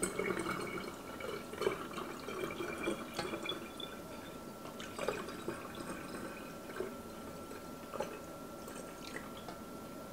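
Sugar-water nectar trickling from a saucepan through a funnel into a hummingbird feeder bottle, thinning after about three seconds to scattered drips. A faint steady high whine runs underneath.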